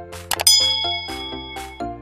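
Notification-bell sound effect for a subscribe-button animation: a couple of quick clicks, then a single bright ding that rings for about a second. It plays over background music with a steady beat.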